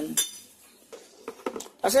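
Aluminium CVT drive-pulley halves from a scooter clinking against each other and the work surface as they are set down: one sharp ringing clink at the start, then a few light metal clicks.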